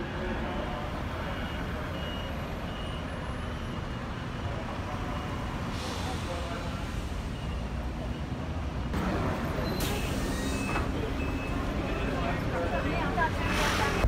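City street traffic: a steady low rumble of passing vehicles, with a louder noisy stretch about nine seconds in, growing louder toward the end.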